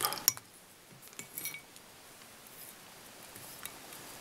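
Mostly quiet, with a few faint, light clinks and ticks from handling at a fly-tying vise while a silver oval tinsel rib is wound up through the hackle.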